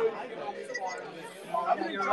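Low background chatter of several people talking at once, with no clear foreground voice.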